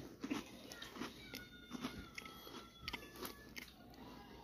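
Wafer cookies being bitten and chewed close to the microphone: soft, irregular crunches.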